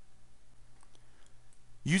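Faint steady low hum of background room tone with a few very faint clicks around the middle, then a man's narrating voice starts near the end.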